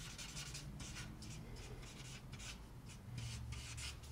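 A blending stump rubbing over graphite on sketch paper in short, quick back-and-forth strokes, about four a second, faint and scratchy.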